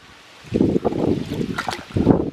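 Water splashing and sloshing in a toddler's plastic water table as he scoops it with a toy, with wind rumbling on the microphone. It starts about half a second in.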